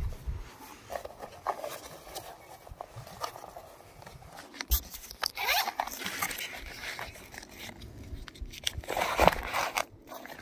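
Unpacking handling noise: cardboard and a foam insert rubbing and scraping under the hand, with a sharp knock about halfway through and louder scraping bursts shortly after and near the end as a coiled rubber power cable is pulled out.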